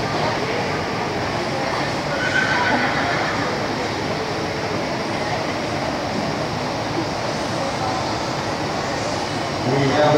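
A horse whinnying briefly about two seconds in, over the steady murmur of an indoor show arena with people talking.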